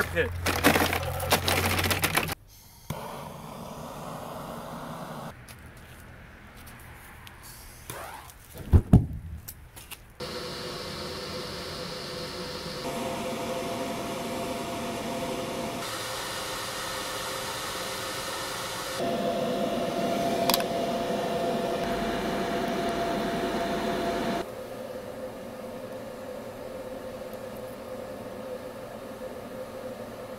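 Lumps of charcoal clattering as they are poured into a brick furnace for the first two seconds or so. After several cuts comes a steady hum and rush of the air blower feeding the charcoal fire through a steel pipe, with a single loud thump about nine seconds in.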